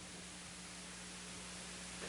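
Faint room tone: a steady hiss with a low, constant hum underneath.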